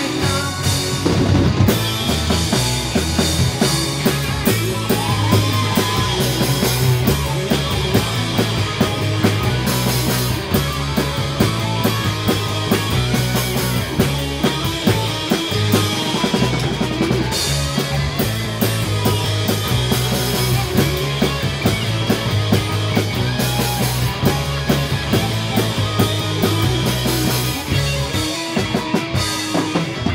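Live rock band playing an instrumental passage with no vocals: distorted electric guitars, bass guitar and a drum kit keeping a steady beat, with keyboard.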